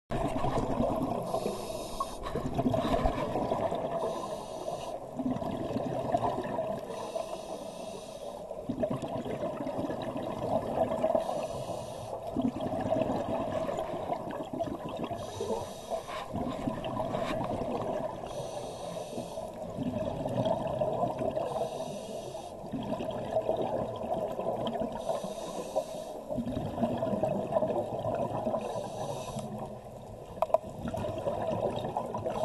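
Scuba diver breathing through a regulator underwater: a short hiss on each inhale alternating with a gurgling rush of exhaled bubbles, repeating roughly every three to four seconds.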